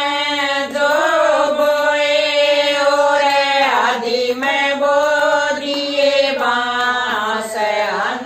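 A group of women singing a Haryanvi bhajan (devotional folk song) in unison without instruments, in long held notes with short breaks between phrases.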